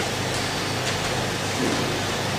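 Steady, even background hiss of room tone, with no words.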